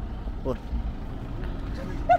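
Steady low rumble of roadside vehicle noise, with a short voice sound about half a second in.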